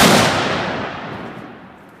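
A single .30-06 rifle shot fired offhand: one loud report with a long echo that trails away over about two seconds.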